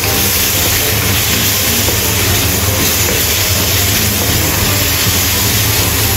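Diced tomato and onion sizzling in oil in a wok as they are stir-fried: a steady hiss.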